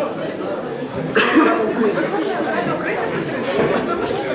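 Several people talking over one another in a large classroom, with one short, loud burst of noise about a second in.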